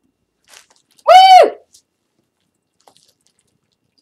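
A woman's single high-pitched "woo!" whoop about a second in, its pitch arching up and then down. Faint rustling around it.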